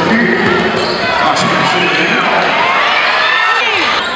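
Basketball being dribbled on a hardwood gym floor, with sneakers squeaking and players' and spectators' voices in the hall.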